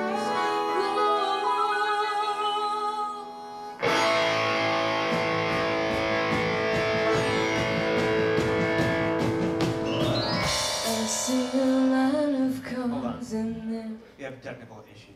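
A live band rehearsing a song with a singer, guitar prominent. It opens with held, wavering notes, then about four seconds in the full band comes in suddenly and loudly, and it thins out near the end.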